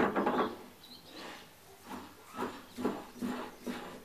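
Steel collet chuck being fitted onto a small metal lathe's spindle nose by hand: a loud metal knock at the start, then a run of lighter clicks and clunks about two a second as it is seated and turned.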